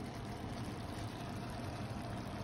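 Shrimp in butter sauce simmering in a cast iron skillet on the stove: a steady, faint hiss of cooking.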